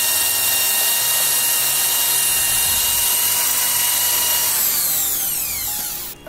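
Corded electric drill running at full speed with its bit grinding out the bore of a motorcycle intake manifold, porting it wider. Near the end the trigger is released and the motor winds down with a falling whine.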